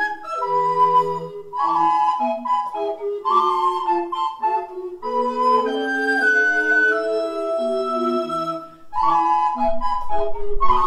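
Recorder ensemble playing in several parts, sustained notes layered from a low bass line up to a higher melody. The playing dips briefly about nine seconds in, then goes on.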